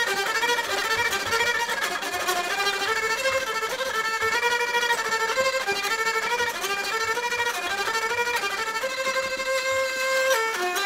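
Homemade laser-cut and 3D-printed hurdy-gurdy (Nerdy Gurdy) playing a tune on its melody string. The cranked, rosined wheel bows the string while the keys change the note every fraction of a second, giving a fiddle-like melody that settles on a longer held note near the end.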